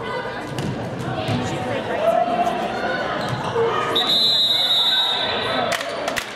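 Players and spectators talking in a large gymnasium, with a referee's whistle blown in one long steady blast about four seconds in that cuts off sharply.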